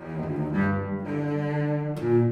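String trio of violin, viola and cello playing classical chamber music, the instruments coming in together right at the start after a brief pause. Low, sustained notes sit under the upper lines.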